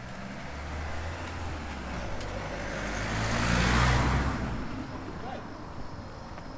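A car passing close by: its engine hum and tyre noise grow louder, peak about four seconds in, then fade away.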